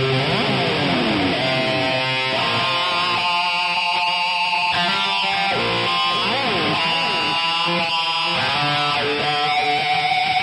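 Electric guitar playing a lead line, with string bends near the start and again about halfway through, between held notes.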